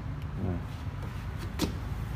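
Kia K165 light truck's diesel engine idling steadily, heard from the open engine bay, with one short click about one and a half seconds in.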